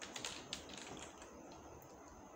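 Faint keystrokes on a computer keyboard as a phone number is typed in: a few quick taps in the first half second, then quieter.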